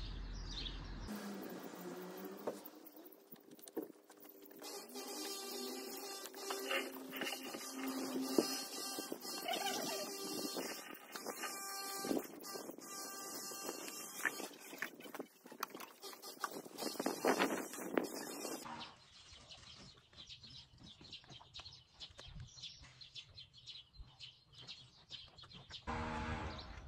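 Wire whisk stirring thick bread dough in a plastic mixing bowl: repeated clicks and scraping of the wires against the bowl.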